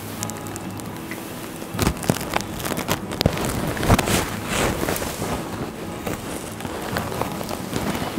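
Tussar silk sari fabric being handled and gathered, its stiff silk rustling and crackling unevenly, with sharper rustles about two and four seconds in.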